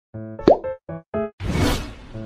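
Intro jingle sound effect: a quick run of short, bouncy notes with a sharp upward pop about half a second in, ending in a whoosh.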